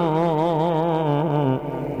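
A man's voice chanting an Arabic qasida, holding one long melismatic note with a wavering vibrato. The note dips slightly in pitch and breaks off near the end.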